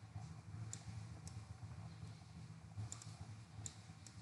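Computer mouse clicking about five times, including a quick double click, over a faint low background hum.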